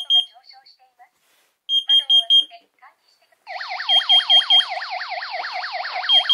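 Two carbon monoxide alarms sounding while being checked. High beeps come in groups of four, one group about two seconds in and another about four seconds in. From about three and a half seconds in, a rapid warbling siren tone joins, rising and falling about six times a second.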